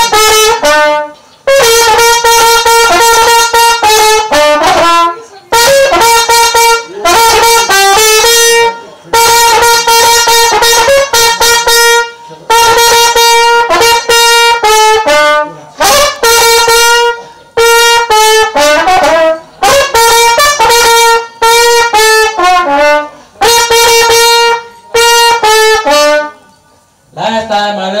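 Unaccompanied solo trumpet playing a melody in phrases of long held notes, broken by short pauses for breath. The playing stops about a second before the end.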